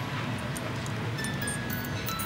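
Tiny hand-cranked music box playing scattered single notes, thin and hard to hear because it is held in the hand with no sounding board to move much air, over a steady hiss.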